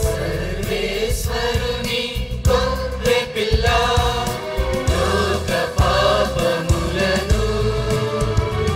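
Church choir singing a hymn with instrumental accompaniment.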